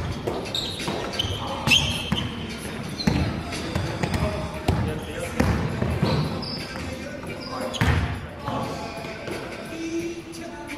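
Basketball bouncing on an indoor court floor in irregular thuds, with players calling out, echoing in a sports hall.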